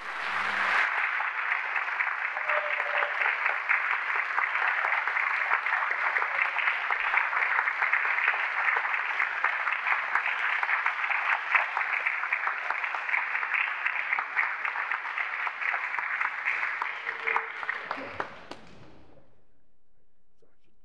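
Audience applauding: dense, steady clapping that breaks out at once and dies away a second or two before the end.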